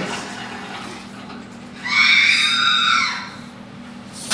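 R2-D2 replica droid giving an electronic squeal of several high tones that rises and falls over about a second, starting about two seconds in.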